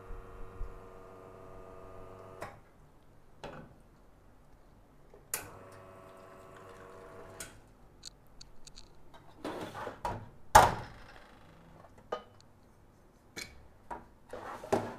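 Nuova Simonelli Appia Life espresso machine's pump humming steadily while a shot runs through the group head to rinse out cleaning detergent. The pump cuts off about two and a half seconds in, then runs again for about two seconds a little later. Metal clatters follow, with one loud knock about ten and a half seconds in as the portafilter is handled.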